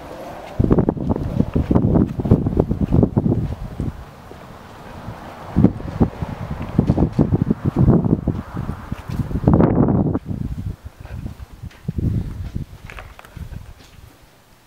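Wind buffeting the camera's microphone in irregular gusts, loud and low, easing off over the last few seconds.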